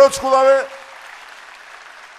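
An audience applauding steadily under and after a man's voice, which ends a phrase in the first half-second.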